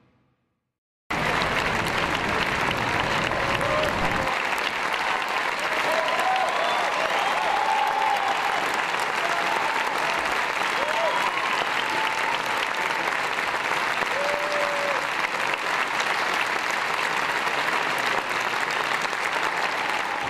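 A theatre audience applauding steadily, cutting in suddenly about a second in, with a few voices calling out over the clapping.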